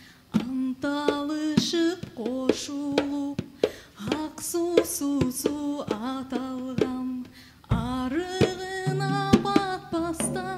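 A woman singing a Kyrgyz folk song in long notes with vibrato, accompanied by a live band. Low held notes join near the end.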